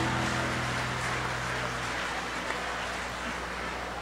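Audience applause after a live rock song, as a steady hiss that slowly fades. A low held note from the band's last chord rings under it and stops about two seconds in.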